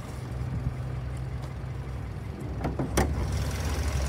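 Hood of a 2019 Hyundai Sonata being opened: a sharp clack from the hood latch about three seconds in, just after a lighter click, over a steady low hum that grows a little louder once the engine bay is open.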